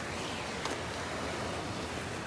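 Steady beach background hiss of wind and surf, with one faint tap a little under a second in.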